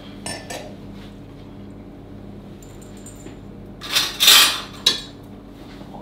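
Metal spoon clinking and scraping in a foil roasting tray as pan juices are spooned over a roast turkey, with small clicks early and a louder noisy scrape lasting about a second around four seconds in.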